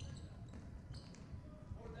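Youth basketball game in play on a hardwood gym court: a few short, high sneaker squeaks and ball sounds over the low hum of the hall.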